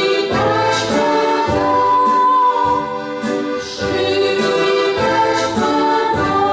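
A woman singing a Christmas carol solo with electronic keyboard accompaniment, in long held notes, reaching a high sustained note about two seconds in.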